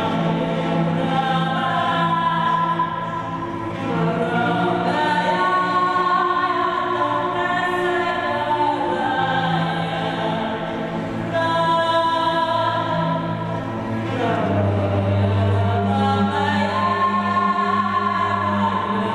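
Bowed cello holding long, low drone notes while a woman sings long, sustained, wavering notes above it.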